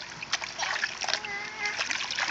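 Toddlers splashing water in a shallow inflatable kiddie pool, a string of quick, irregular splashes, with a small child's voice briefly in the middle.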